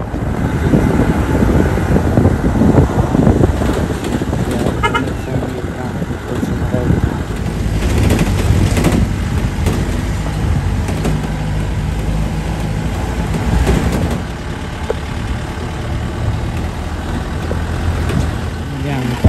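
Jeep driving on a rough dirt road: steady engine and road rumble with wind, and a short run of high beeps about five seconds in.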